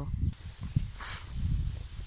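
Uneven low rumble of wind and handling noise on a handheld phone's microphone, with a single click a little before a second in and a faint rustle about a second in.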